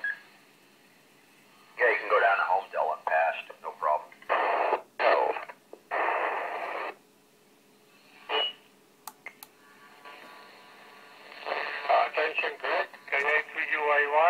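Yaesu FT-817 transceiver speaker receiving a 10-metre FM repeater: thin, band-limited voices of distant stations, hard to make out, broken by bursts of hiss as signals drop in and out. A short high beep comes about eight seconds in, a few clicks about a second later, and the voices return near the end.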